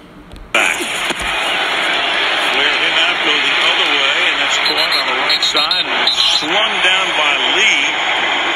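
Football TV broadcast audio: loud stadium crowd noise that comes in suddenly about half a second in and holds steady, with voices over it.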